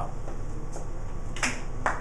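A single sharp snap or click about a second and a half in, over steady low room hum.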